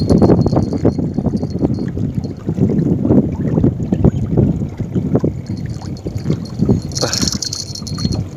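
Gusty wind buffeting the microphone over water lapping and splashing, an uneven low rumble throughout, with a brief hiss about seven seconds in.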